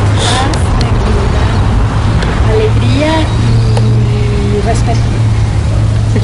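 Steady low rumble with faint, scattered voices of people talking in the background.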